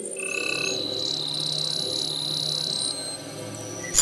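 Electronic channel-branding music: a high held tone with a fast pulsing texture over low sustained notes, ending in a brief whoosh as the graphic changes.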